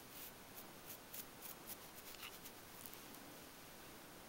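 A cat's teeth chewing on the bristles of a manual toothbrush: a string of faint, quick, crisp scratches that stops about three seconds in.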